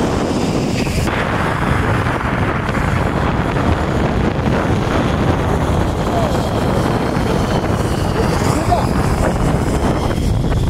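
Steady loud rush of wind on the microphone and the sled running over snow while an inflatable snow sled is towed at speed, with the towing snowmobile's engine running ahead.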